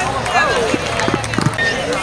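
Spectators chatting in a ballpark crowd, several voices overlapping, with no clear words.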